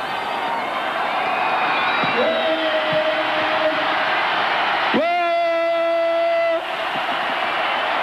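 A man's voice calls out long, held "whoa"s into a microphone, twice: once about two seconds in and once about five seconds in, the second louder. A large arena crowd cheers steadily underneath.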